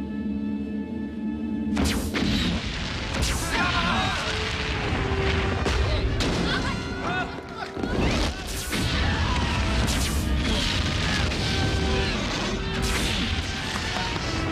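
Film sound effects of an explosive attack. A sudden heavy boom about two seconds in is followed by a continuous low rumble and repeated explosions and crashes.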